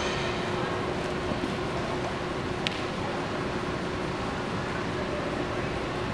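Steady low rumble of a large indoor riding arena's room noise, with a faint steady hum and one sharp click a little under three seconds in.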